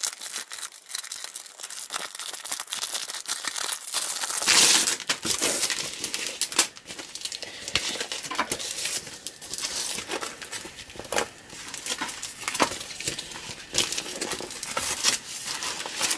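Thin clear plastic packaging bag crinkling and tearing as it is opened, then paper sticker sheets rustling and crackling as they are pulled out and leafed through. It is loudest about four to five seconds in.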